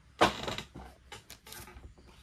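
Foil trading-card pack crinkling as it is handled: one sharp crackle about a quarter second in, a softer rustle, then a few light ticks.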